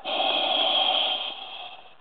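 Scuba diver's exhaled breath leaving a regulator as a rush of bubbles, recorded underwater. It starts suddenly, stays loud for about a second, then fades away.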